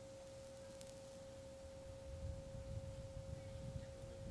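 Distant train horn held as one long steady note, with a faint low rumble swelling in the second half.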